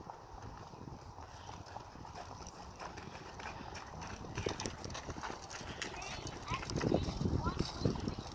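A horse's hoofbeats at the trot on sand arena footing, growing louder in the second half as the horse passes close.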